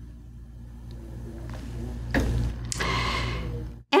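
A low rumble that grows louder, joined by a hiss about halfway through, then cuts off suddenly near the end.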